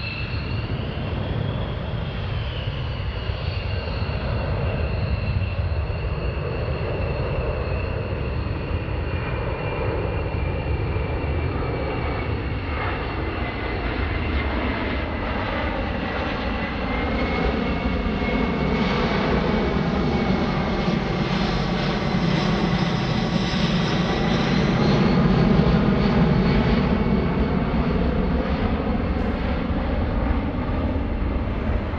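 C-17 Globemaster III's four Pratt & Whitney F117 turbofan engines on a low pass: a steady jet roar with a high whine that slowly falls in pitch, growing louder as the aircraft comes close and loudest a few seconds before the end.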